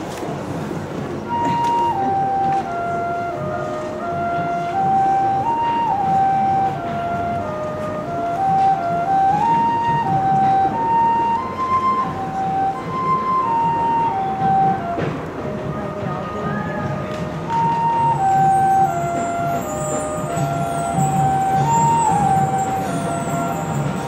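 Marching band playing the quiet, slow opening of its field show: a single high melody line moves up and down in steps over a low sustained background. A faint high shimmer joins after about 18 seconds.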